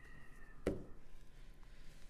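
A quiet pause with low room tone, broken by a single sharp click about two-thirds of a second in.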